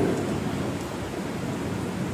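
Steady, even background hiss of room tone from the hall and its sound system, with no voice in it.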